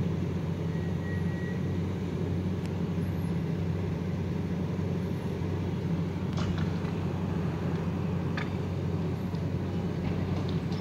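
A steady low engine hum, as of a vehicle idling, with two faint sharp bangs about six and a half and eight and a half seconds in.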